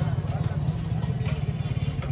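An engine idling steadily with a rapid, even low throb, with faint voices in the background.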